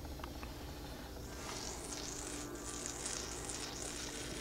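Faint sizzling hiss from water heating on a stainless steel plate over a nine-tip HHO multi-burner, growing louder about a second in, over a steady low hum.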